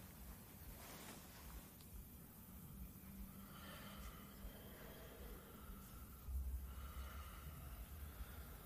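Faint breathing and sniffing in a quiet room, with soft hazy breaths heard from about halfway through.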